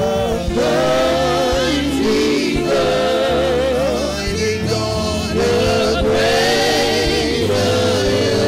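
Gospel praise song: a worship team with a male lead sings slow, held notes with vibrato over a band accompaniment of bass and keyboard.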